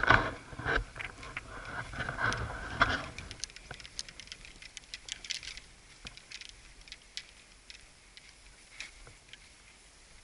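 Golf clubs clinking and rattling against each other in a golf bag as it is moved, with heavier knocks and rustling for the first three seconds, then lighter scattered clicks.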